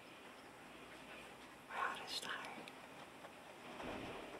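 Hedgehog snorting: several short, breathy huffs, the loudest about two seconds in and another near the end. The keeper takes the snorting for a healthy sign.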